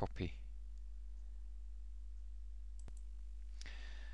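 A single sharp computer mouse click about three seconds in, over a steady low electrical hum.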